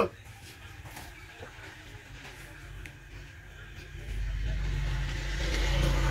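Quiet room tone with a few faint clicks, then a low steady rumble that builds about four seconds in.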